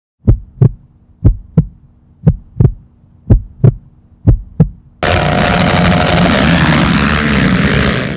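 Heartbeat sound effect: five double thumps, lub-dub, about one a second over a faint steady hum. About five seconds in a loud rushing noise cuts in suddenly and stays loud.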